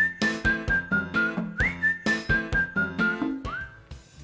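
Short programme jingle: a whistled melody over a bouncy backing with a steady beat. The whistle slides up, then steps down through a few held notes; the phrase plays twice and a third slide begins near the end.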